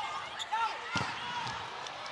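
A volleyball struck hard about a second in, a sharp slap, during a rally. Short sneaker squeaks on the court floor come through over the arena crowd.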